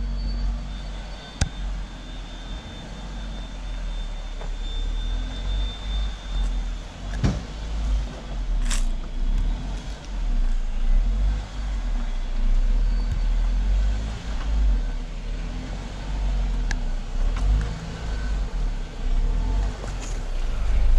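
Off-road vehicle engine running at low revs while crawling slowly up a rocky, rutted dirt trail, with a steady low rumble and a few sharp knocks as the tyres meet rock.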